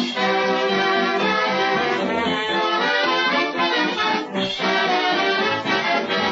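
Dance band playing, with brass to the fore, in an old radio broadcast recording whose top end is cut off.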